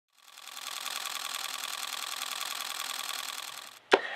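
A rapid, steady mechanical clatter that fades in and stops suddenly just before the end, followed by a single hand clap.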